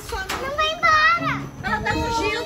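Excited children's voices shouting and crying out, with one loud high cry about a second in that slides downward in pitch, over background music with held low notes.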